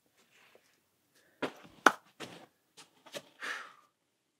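A climber's handling sounds at the foot of a boulder: a few short taps and scuffs, the loudest a sharp click about two seconds in, then a short breathy rush near the end.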